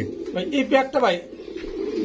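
Caged domestic fancy pigeons cooing, with a man's voice briefly in the middle.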